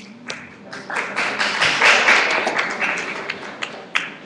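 Audience applauding, the clapping swelling about a second in and tapering off near the end.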